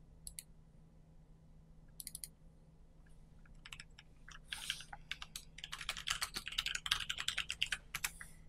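Faint computer keyboard typing as text is entered into a table cell. A few separate clicks come near the start, and a rapid run of keystrokes begins about four and a half seconds in.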